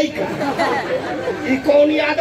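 Only speech: voices talking over one another.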